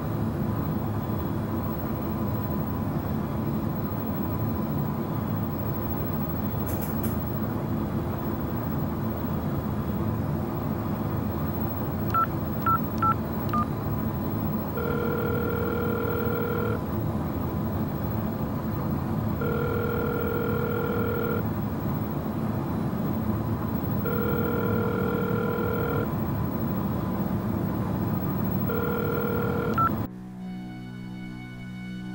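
Phone keypad beeps, four quick tones, then a telephone ringback tone: about two seconds of ringing repeating four times, every four to five seconds, as an outgoing call rings unanswered. A steady background noise runs beneath.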